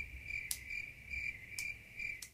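Cricket chirping sound effect: a steady, pulsing high trill that cuts off abruptly near the end, with a few sharp clicks over it.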